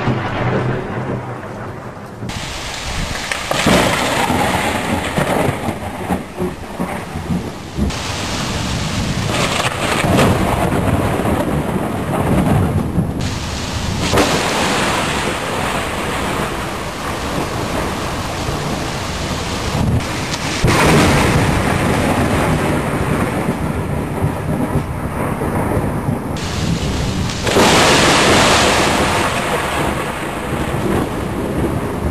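Thunder rumbling and cracking with steady rain. The sound changes abruptly several times, jumping from one storm recording to the next.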